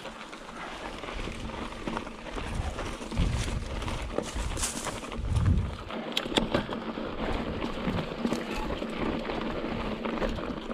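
Fezzari Wasatch Peak hardtail mountain bike rolling over a loose, rocky dirt trail: tyre noise and a low rumble, with scattered sharp clicks and rattles from the bike that come more often from about halfway through.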